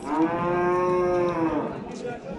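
One head of cattle mooing: a single loud, long call of almost two seconds that rises slightly in pitch and falls away at the end.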